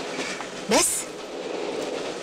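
Steady running noise of a moving passenger train heard from inside the carriage.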